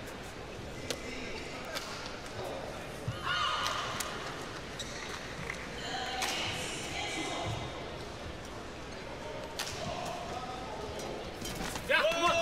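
Indoor badminton hall ambience between points: crowd chatter and scattered voices, with occasional sharp taps. Near the end a short rally starts, with a few quick shuttlecock strikes.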